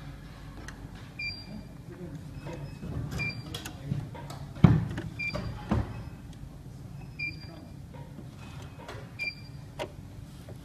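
A short electronic beep repeating about every two seconds, over clicks and knocks of hands handling the heat press's controller housing. The loudest knock comes about halfway through, with a second one just after.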